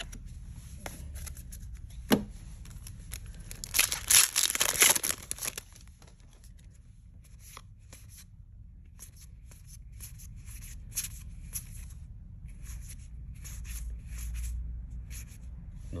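Trading cards being flipped through by hand, each card slid off the stack with a short flick, making a quick string of soft card-on-card snaps. About two seconds in there is one sharp click, and about four seconds in a louder burst of rustling that lasts a second or so.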